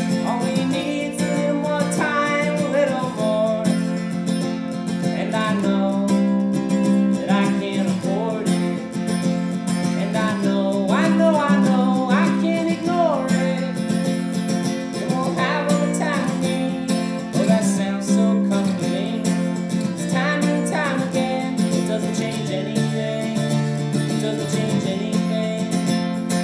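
Solo acoustic guitar playing the instrumental introduction to a song, a continuous chord pattern over a sustained low bass that shifts lower near the end.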